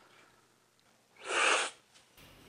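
A single loud, hard slurp of coffee from a cupping spoon, about a second in and lasting half a second: air sucked in with the coffee, the tasting slurp of cupping that sprays it across the palate.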